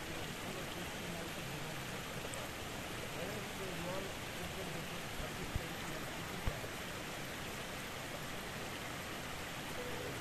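Steady rushing of flowing water, with faint voices in the background and two faint clicks about a second apart past the middle.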